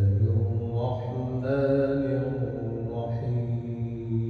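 A man reciting the Quran in the melodic qira'at style through a microphone: long, held notes that slide in pitch, with a new phrase beginning about a second and a half in and another near three seconds.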